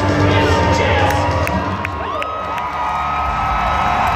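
Arena crowd cheering and whooping over low background music, with one long high-pitched call held through the second half.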